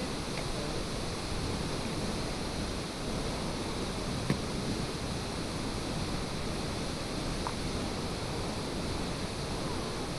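Steady rush of a tall waterfall plunging into a pool, with one sharp knock about four seconds in.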